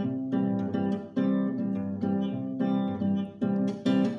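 Acoustic guitar strummed in a light, samba-like rhythm, chords struck about once or twice a second and left ringing: the instrumental introduction of a song.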